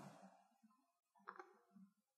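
Near silence: room tone, with one faint short click a little over a second in.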